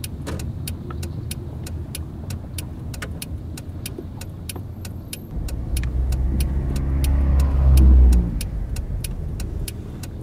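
Car engine noise heard from inside a car. A second engine rumble swells up to loud about halfway through, peaks near the end, then fades away, as a car drives close by. A steady fast ticking, about four a second, runs underneath.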